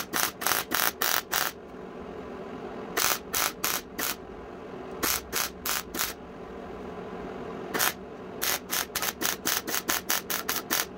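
MIG welder stitch-welding sheet-steel running board panels together. The trigger is pulsed, so the arc sounds in short bursts, about three or four a second. The bursts come in runs of four to eight, with pauses of a second or two between runs while the torch is moved.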